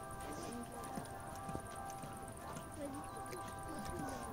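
Lion lapping and licking at water poured from a plastic bottle, the water spilling and splashing past its mouth.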